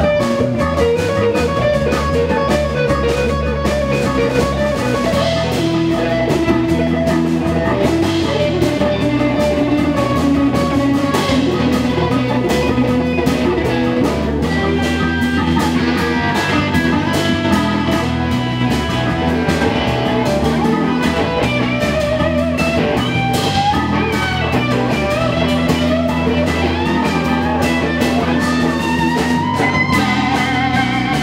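Live blues-rock band playing an instrumental passage: Stratocaster-style electric guitar carrying lead lines with bent, held notes over drum kit and keyboard.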